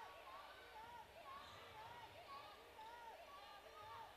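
Near silence: faint gym sound with distant voices.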